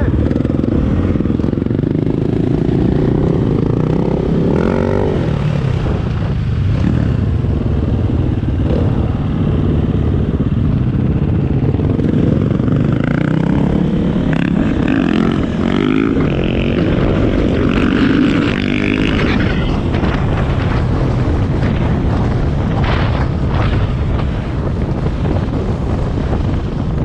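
Dirt bike engine running under way on a paved road, heard from the rider's own bike, its pitch rising and falling with the throttle several times.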